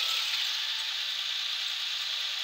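Farm tractor engine running while it hauls a loaded trailer through mud, heard as a steady, hiss-like noise with no clear beat.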